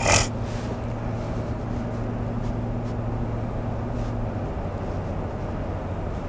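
Ram pickup's 5.7 Hemi V8 engine and road noise heard inside the cab while driving, a steady drone that drops slightly in pitch about four seconds in. A short loud burst of noise comes right at the start.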